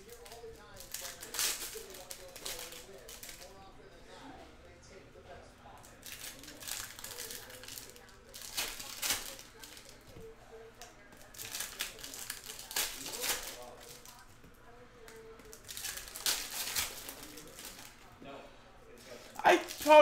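Foil wrappers of O-Pee-Chee Platinum hockey card packs crinkling and tearing as the packs are ripped open, in repeated bursts every few seconds, with cards being handled in between.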